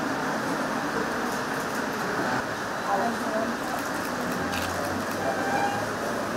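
Indistinct chatter of several people over a steady background hiss, with no single voice standing out.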